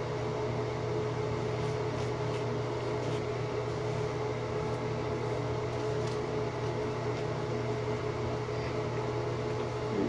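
Steady hum of a ventilation fan: a constant low drone with a faint, even higher tone above it, unchanging throughout.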